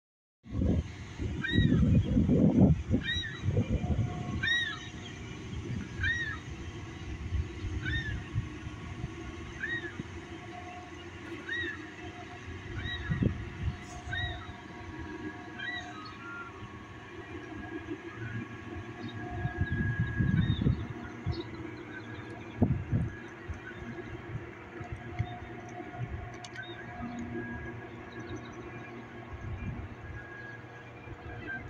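A steady low drone with several held tones from the passing bulk carrier Federal Churchill's diesel engines and machinery, broken by gusts of wind rumbling on the microphone that are loudest near the start and about two-thirds through. Over the first half a bird calls over and over, a short rising-and-falling chirp about every second and a half.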